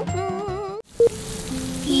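Bouncy background music with a steady beat that cuts off just under a second in, followed by a short beep and then steady rain falling.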